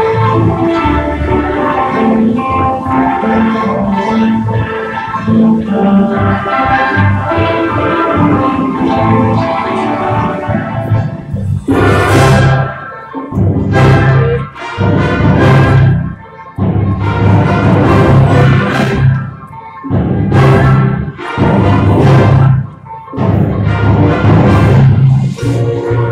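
Symphony orchestra playing film music live: a flowing melodic passage, then from about halfway a run of loud, accented chords with short breaks between them.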